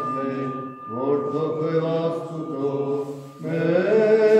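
Armenian Apostolic liturgical chant from low male voices, sung in long held notes. The phrases break for a breath about a second in and again around three and a half seconds.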